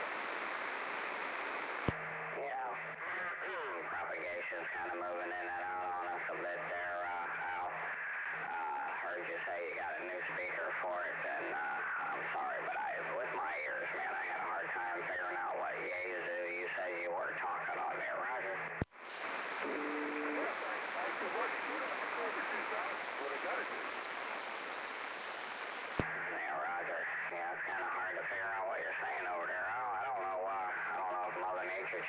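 CB radio receiving single-sideband voice transmissions over static hiss. Sharp clicks come about two seconds in, about two-thirds of the way through and a few seconds before the end, as one transmission stops and another starts, with plain hiss between them.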